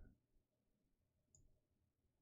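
Near silence, broken by two faint computer mouse clicks: one about half a second in and one a little past the middle.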